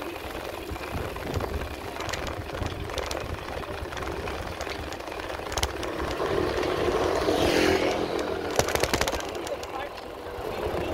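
Wind buffeting the microphone and road rumble during a bicycle ride, with a louder rush of noise building to about eight seconds in and a few sharp clicks near the end.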